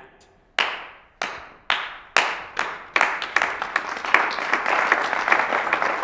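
A slow clap: single echoing hand claps about two a second, joined by more and more hands until it swells into full audience applause about three seconds in.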